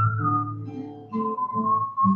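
A man whistling a melody over his own strummed acoustic guitar: a clear whistled note slides up slightly at the start, then settles into long held notes, with fresh guitar strums about a second apart.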